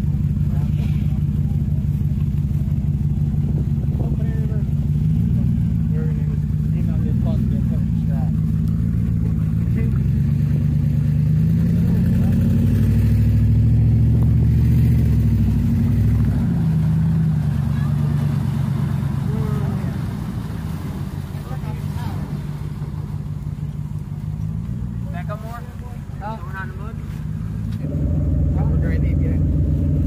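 Pickup truck engines running under load and revving up and down as a stuck truck is pulled out of mud on a tow strap, the pitch rising and falling in long swells. About two seconds before the end the sound changes suddenly to a different, steadier engine drone.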